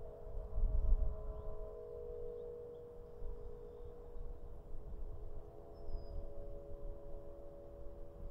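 Celtic harp strings set sounding by the wind: several sustained, overlapping tones that ring on and shift, with a lower tone joining about five seconds in. A low rumble of wind on the microphone runs underneath, strongest about a second in.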